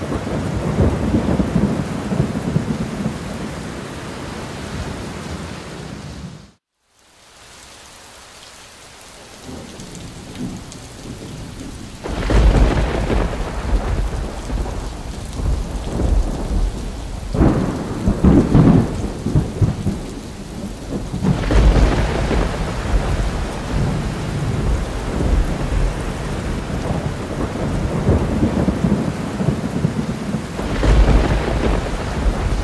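Thunderstorm: steady rain with rolling thunder. The sound cuts out briefly about a quarter of the way in and comes back quieter, then loud thunder rumbles set in about twelve seconds in, with further rolls around the middle and near the end.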